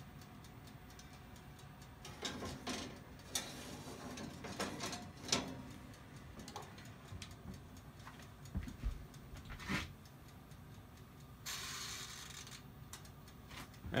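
Countertop toaster-style oven being shut on a loaded rack: a few sharp knocks and clatter of the rack and door in the first seconds and again around the ninth second, over the steady ticking of the oven's mechanical timer. A brief hiss comes near the end.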